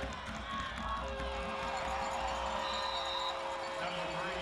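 Football stadium crowd: many voices at once, with two steady held notes starting about a second in and a short high whistle near the three-second mark.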